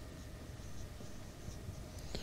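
Marker pen writing on a whiteboard, faint.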